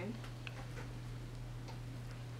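Quiet room tone: a steady low hum with a few faint, short clicks at uneven intervals.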